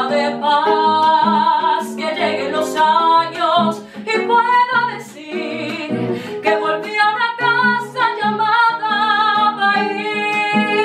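A woman singing a Colombian bambuco with held, wavering notes, accompanied by a nylon-string classical guitar.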